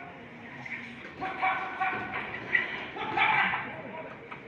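Boxing crowd shouting and yelling at ringside, with a few short high-pitched calls about a second in and again near the end, over a steady murmur of voices.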